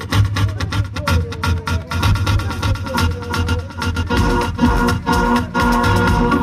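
Electronic dance music from a live DJ set, with a steady beat and heavy bass.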